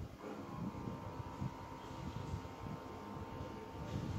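Quiet indoor room noise: an uneven low rumble with a thin, steady high whine that comes in about half a second in.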